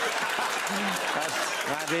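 Studio audience applauding, with a voice starting to speak over it near the end.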